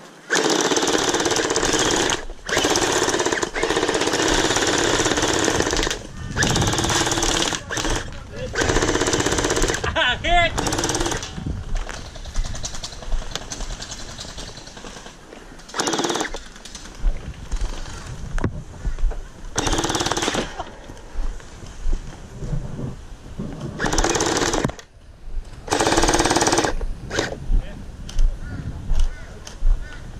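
M249 gel blaster firing on full auto, its electric gearbox rattling out long bursts of two to three and a half seconds, then shorter bursts of about a second in the second half.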